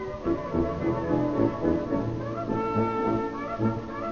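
Wind band playing, with brass instruments to the fore.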